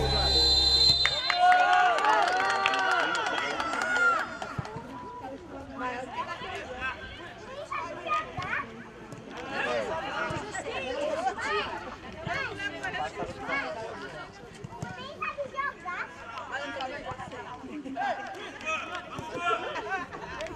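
Intro music cuts off about a second in, giving way to live match sound of a boys' football game: players and coaches shouting and calling to each other across the pitch, scattered voices throughout.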